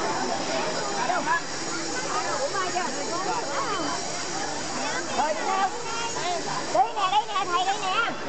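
Crowd chatter: many voices talking over one another at once, with no single speaker standing out, growing louder and livelier near the end.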